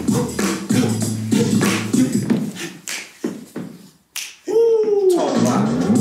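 Upbeat hip-hop dance track with a beatbox-style vocal beat and bass. About three seconds in the beat drops away almost to silence, then one pitched tone glides up and back down before the beat comes back in.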